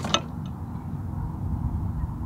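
Steady low rumble of wind buffeting the microphone, with a couple of short clicks right at the start.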